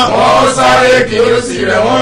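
A man's voice chanting in long, drawn-out sung tones that slide slowly up and down in pitch. A steady low hum runs beneath it.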